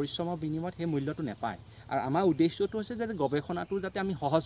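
A man talking, with short pauses between phrases.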